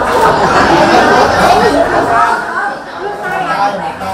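Several people talking at once: indoor chatter of a small gathering, with no single voice clear.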